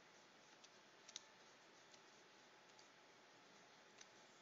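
Near silence with a handful of faint, scattered clicks from desk computer controls as the artist works, the loudest a quick double click just after one second in.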